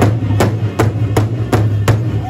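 Large powwow drum struck in unison by several drummers with padded sticks, a steady beat of nearly three strikes a second. The singing drops out and the drum carries on alone.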